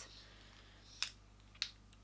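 Two short, light clicks about half a second apart, from makeup brushes being handled, over quiet room tone.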